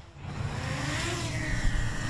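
Small quadcopter drone's propellers whirring in flight: a loud, steady buzzing hiss whose pitch swells up and eases back down.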